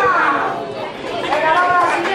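Several voices shouting and calling out over one another: one call at the very start, then more about a second and a half in.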